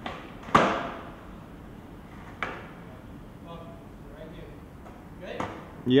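Skateboard on asphalt: sharp clacks of the deck popping and landing during flatground flip tricks, the loudest about half a second in, with further clacks around two and a half and five and a half seconds in.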